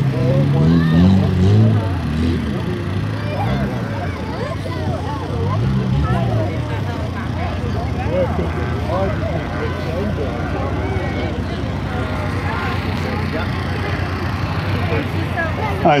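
Car engines running and revving on the field, their pitch rising and falling several times in the first half, over a steady background of spectators' chatter.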